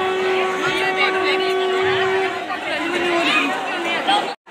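Indoor crowd of many people talking at once, a dense babble of overlapping voices. Through the first half a single steady note is held, then stops a little past two seconds in.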